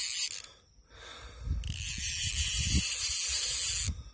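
Fishing reel being cranked to retrieve line on a hooked fish, a high whirring, ratcheting hiss that stops about half a second in, resumes about a second and a half in and cuts off near the end, with low handling bumps in between.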